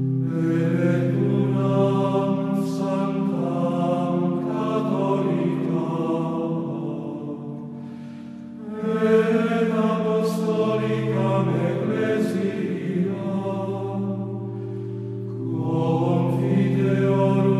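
Background choral chant: voices holding long, slow notes over sustained low notes, with a brief lull about eight seconds in.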